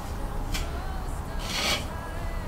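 Putty knife scraping wood filler across a wooden lamp base: a short stroke about half a second in, then a longer one near the end.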